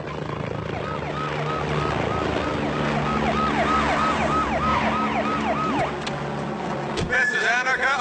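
A police siren in quick repeated falling sweeps, about three a second, over loud band music. Near the end a man starts speaking through a megaphone.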